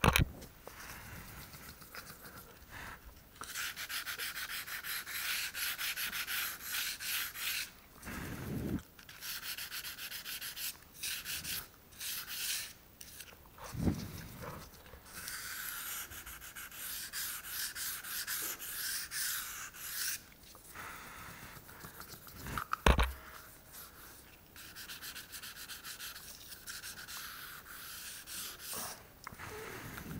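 Folded 240-grit sandpaper rubbed by hand along the grout joints between floor tiles, scouring flush grout back down so the joints sit slightly recessed. It goes in quick scratchy back-and-forth strokes, in spells of several seconds with short pauses. A few dull thumps come between the spells, the loudest about two-thirds of the way in.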